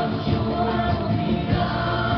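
A woman singing a Persian pop song into a microphone over amplified live band music. The music is continuous and steady in loudness.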